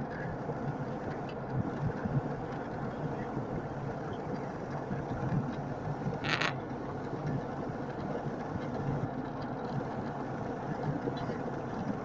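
Steady airliner cabin drone of engines and rushing air, heard in flight from a window seat. A brief hiss cuts through it once, a little past the middle.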